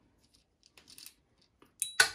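Faint small metal clicks of an Allen wrench working a tiny screw loose on a Hoyt Integrate MX arrow rest, then a sharper, short metallic clink with a brief ring near the end.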